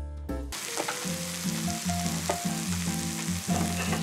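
Food sizzling in a frying pan as it is stirred with cooking chopsticks, a steady frying hiss that starts about half a second in.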